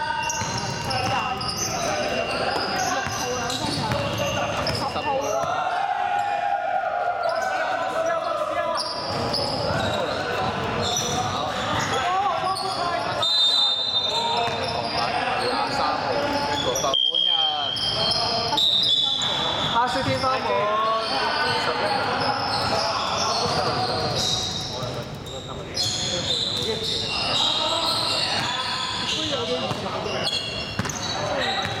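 Basketball bouncing on a hardwood gym floor during a game, mixed with players' voices, all echoing in a large indoor hall.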